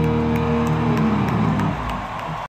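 Live rock band's electric guitars holding a final chord that rings on and starts to die away near the end, as the song closes. Faint ticks come about three times a second over it.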